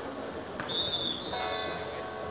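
A volleyball referee's whistle blown once: one high, steady blast lasting about a second, just after a short sharp knock. Voices carry on underneath.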